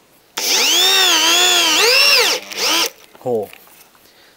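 A corded 500 W Reaim electric drill, run in plain drill mode with a screwdriver bit, drives a screw into an old wooden plank. The motor whine rises, dips and rises again for about two seconds, then cuts off, followed by a short second burst to drive the screw home.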